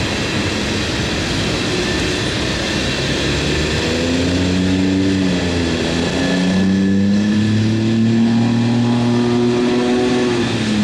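Freight train of tank cars rolling past: steady wheel and rail noise. From about four seconds in, a droning engine-like hum whose pitch drifts slowly joins it.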